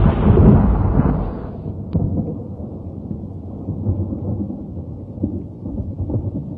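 A loud, deep rumbling boom from a logo sound effect that dies down about a second and a half in. It leaves a quieter low rumble, like distant thunder, with a single sharp click near two seconds.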